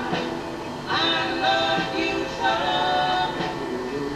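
A 7-inch vinyl single playing on a turntable: a male vocal group sings long held harmony notes in a slow soul ballad, the chords shifting every second or so.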